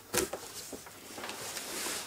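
Cardboard carton being handled: one sharp crack of a flap just after the start, then softer rustling of cardboard and a plastic bag.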